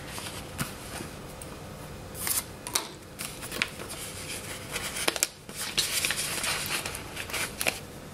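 A paper sheet of planner stickers being handled: rustling and crinkling in short bursts, with a few sharp taps and clicks.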